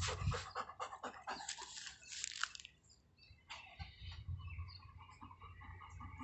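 A golden retriever panting rapidly, about four to five breaths a second, for the first half; from about halfway through, short repeated bird calls take over.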